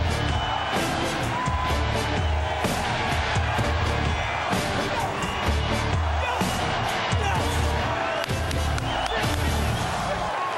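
Rock music with a steady heavy beat, laid over a stadium crowd cheering.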